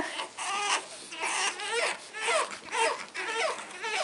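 Pug puppy whining, a string of short high-pitched cries that fall in pitch.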